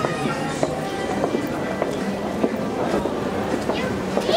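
Busy indoor public-space ambience: background music and the voices of people nearby, with scattered short clicks.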